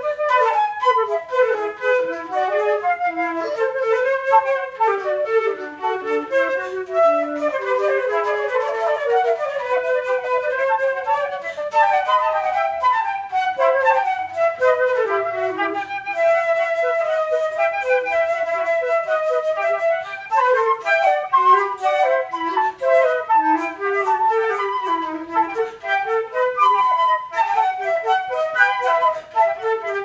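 Two concert flutes playing a duet: two interleaving melodic lines with quick runs of notes.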